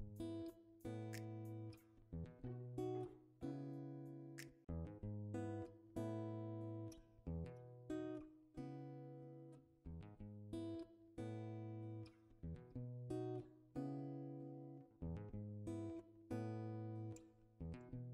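Quiet background music of acoustic guitar: plucked chords struck at an unhurried, even pace, each fading before the next.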